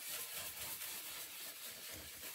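Chip brush scrubbing clear furniture wax into the painted wood of a dresser drawer, a steady brushing.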